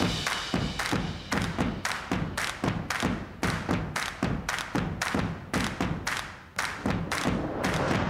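Channel intro music built on a fast, steady run of heavy thumps, about four a second, with a brief drop about six and a half seconds in.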